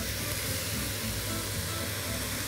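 Steady sizzling of chopped vegetables and freekeh sautéing together in a pot, with faint background music.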